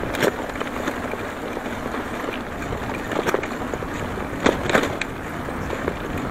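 Bicycle tyres rolling over a road of concrete slabs, a steady rolling and wind rush with a few sharp knocks and rattles as the bike jolts over the joints between the slabs.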